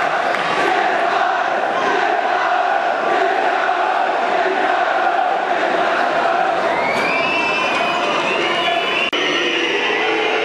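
Football stadium crowd cheering and chanting after a penalty goal in a shootout. High, shrill whistling rises over the crowd about seven seconds in.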